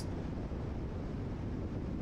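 Steady low rumble of a car driving on a freeway: road and engine noise with no change in level.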